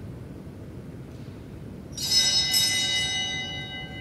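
A small bell struck about two seconds in. Several high tones ring on and slowly fade.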